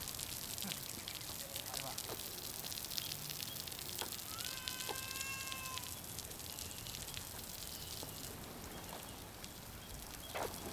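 Lawn sprinkler spraying water over bare soil: a steady hiss with light ticks. A brief held tone sounds near the middle.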